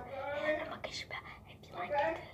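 A girl talking in a soft, close voice; the words are not made out.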